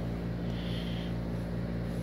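A steady low hum made of several constant low tones, with a faint hiss about half a second to a second in.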